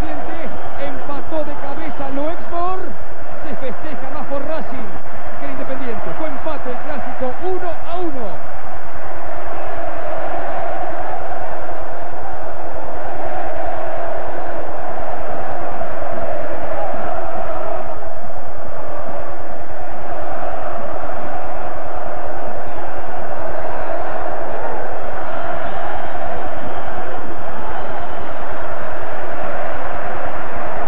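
Large stadium crowd of football supporters cheering and singing together as a loud, dense mass of voices. In the first several seconds individual shouting voices stand out above it.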